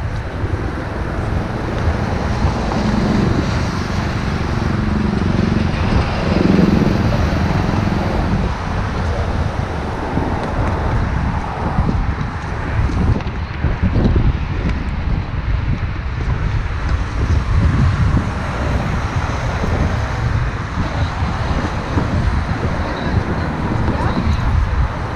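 Steady city road traffic, cars and buses passing close by, with wind rumbling on the microphone throughout.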